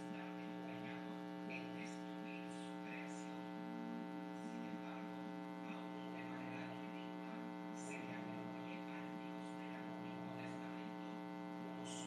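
Faint, steady electrical hum with a stack of even overtones, unchanging throughout; short faint high chirps come and go over it.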